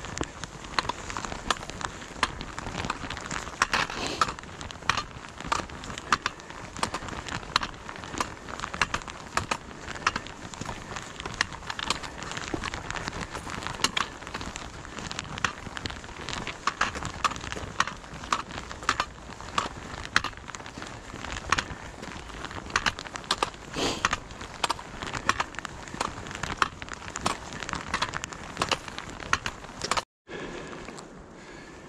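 Walking on a paved trail with a trekking pole: a constant run of irregular sharp clicks and crackles from footsteps, the pole tip striking the asphalt and the hiker's clothing rustling against the hand-held camera.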